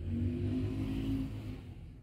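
A motor vehicle's engine passing on the street: it comes in suddenly, is loudest in the first second or so, then fades away.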